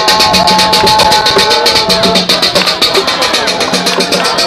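Dance music with a fast, even percussion pulse of about seven strokes a second and held melodic tones over it.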